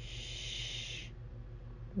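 A woman's drawn-out "shh", a hushing hiss that lasts about a second and then stops.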